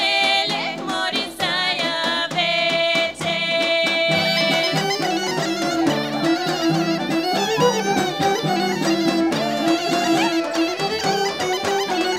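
Bulgarian folk music: two women sing a song over a steady drone. About four and a half seconds in, the singing gives way to an instrumental passage led by the gaida bagpipe, with other folk instruments and regular beats of the tapan drum.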